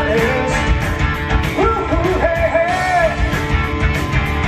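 Live rock band playing: a male lead vocal sung over electric guitar, bass and a steady drum beat, with one long sung line through the middle.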